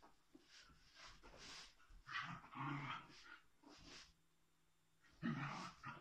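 Two small dogs play-fighting, with growls and scuffling in bursts, the loudest about two seconds in and again near the end.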